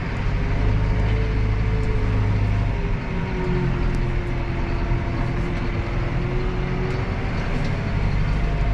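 Tractor diesel engine running steadily while driving, heard from inside the cab, with a faint steady whine over the low engine hum.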